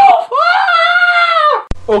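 A man's high-pitched scream, one long held cry of over a second that ends abruptly, followed near the end by a sharp click.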